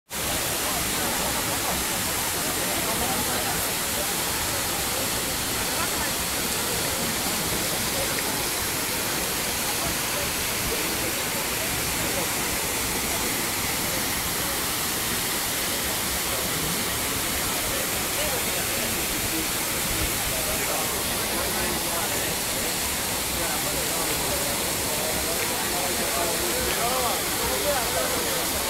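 Trevi Fountain's cascades pouring over the travertine rocks into the basin: a steady, unbroken rush of falling water, with indistinct chatter of voices underneath.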